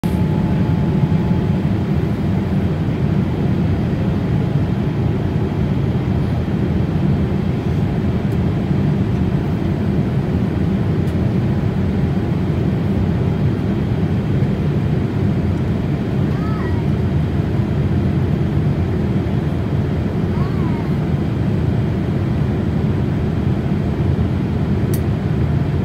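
Jet airliner cabin noise during the landing approach: a steady, deep rush of airflow and engines with no change in level.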